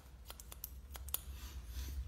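Hairdressing scissors snipping through a section of wet hair: a quick run of about seven faint, sharp snips in the first second or so.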